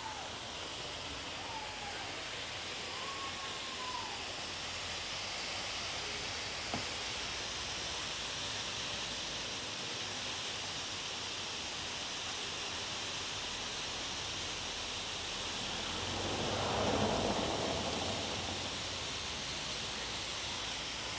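Outdoor ambience: a steady rushing hiss, with a few brief bird whistles in the first few seconds and a broad swell of noise that rises and falls about three quarters of the way through.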